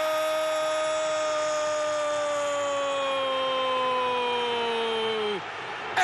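A football TV commentator's drawn-out goal cry: one long held note that slowly sinks in pitch and breaks off near the end, over steady crowd noise.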